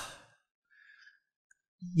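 A man's voice trails off at the end of a spoken prayer phrase. A mostly silent pause follows, with a faint soft breath about a second in, and his voice starts again near the end.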